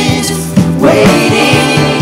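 Live worship band playing an upbeat praise song with a steady drum beat, the vocal team singing along.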